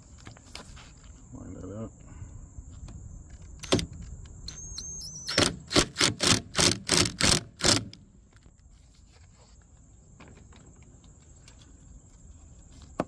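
Ryobi cordless driver with a T30 Torx bit tightening the bolt on a convertible top's flap-tab bracket: a short rising whine of the motor about four seconds in, then about eight short bursts, roughly three a second, as the bolt is driven tight.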